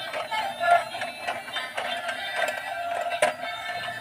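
Dancing Tayo police car toy playing its built-in electronic tune through a small speaker, thin and without bass, with a few sharp clicks from the toy as it drives and wiggles along.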